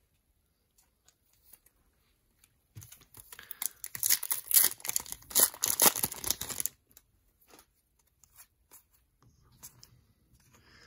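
A foil trading-card pack wrapper being torn open and crinkled in the hands. The dense crackling starts about three seconds in and lasts about four seconds, followed by a few faint ticks as the cards are handled.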